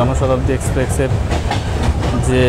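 Steady low rumble of a passenger train running, heard from inside the coach, with voices over it.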